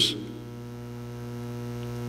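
Steady low electrical hum with a ladder of even overtones, holding level throughout; the tail of a spoken word fades out at the very start.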